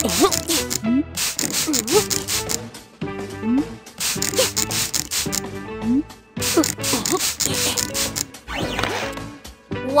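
Spray-bottle sound effects: repeated quick squirts of hissing spray from a trigger spray bottle of wax, coming in clusters, over background music.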